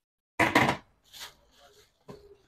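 Plastic bags and plastic containers being handled: a short burst of rustling and clattering about half a second in, then a fainter rustle.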